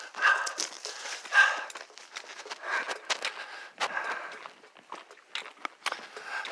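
A hiker's footsteps on the trail, roughly one step a second, with small clicks and rustles of gear.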